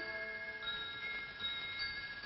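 Lull in a traditional Japanese dance accompaniment between runs of plucked string notes: a few faint, thin high tones ring on, like small chimes or bells, over the hiss of an old film soundtrack.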